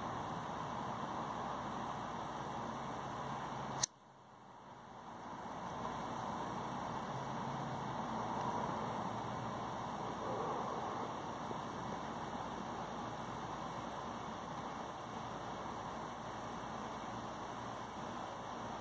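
Steady outdoor background hiss, with one sharp click about four seconds in, after which the sound drops away and fades back up over a couple of seconds.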